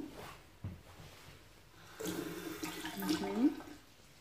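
Bathroom washbasin mixer tap turned on, running water for about a second and a half, with a pitched whine in it that rises just before it stops.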